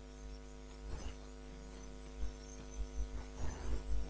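Steady electrical mains hum: several fixed tones held level, with a low rumble underneath.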